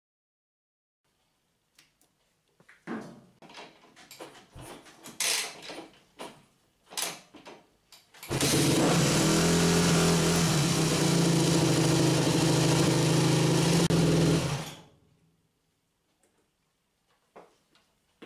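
Yamaha YZ250F single-cylinder four-stroke dirt bike engine being hot-started by kickstarter, with the hot-start knob pulled and the choke closed. A few seconds of knocks and clunks come first. About eight seconds in the engine fires and runs at a steady speed for about six seconds, then stops and dies away.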